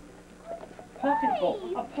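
A person's voice exclaiming about a second in, one drawn-out call whose pitch rises and then slides down, running on into talk and laughter.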